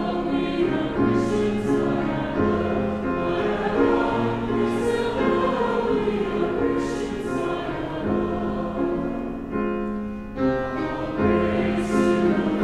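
Church choir and congregation singing a hymn in sustained notes, with a brief pause for breath about ten seconds in before the next phrase.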